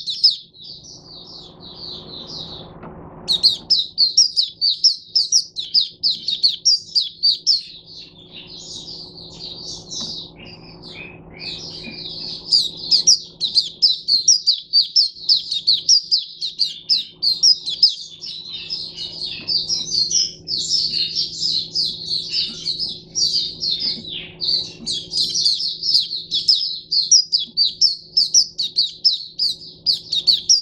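A caged white-eye (mata puteh) sings a long, rapid, high-pitched twittering song, breaking off briefly about three seconds in and again about two-thirds of the way through.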